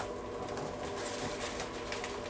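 A steady hum of several held tones, with faint rustles through it and a short sharp click right at the start.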